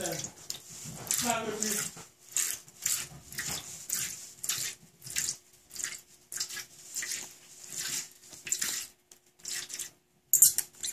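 A small squeeze bottle of red food colouring squeezed over and over, about twice a second, each squeeze sputtering out air and the last drops as the bottle runs empty.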